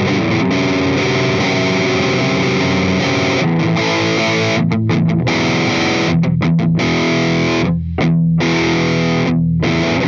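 PRS S2 Singlecut Standard Satin electric guitar with #7 pickups, played through a distorted amp tone. Ringing chords at first, then in the second half chords cut short by several brief stops.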